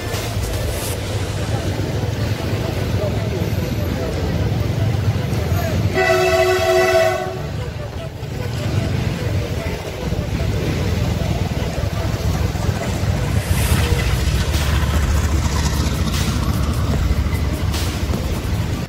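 Riding a motorcycle through slow traffic: a steady low rumble of engine and wind. About six seconds in, a horn sounds once for about a second, a chord of two or more notes.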